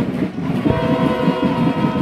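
Brass instruments holding long, steady notes over a busy low accompaniment, with a short dip just after the start and a new held chord coming in well under a second later.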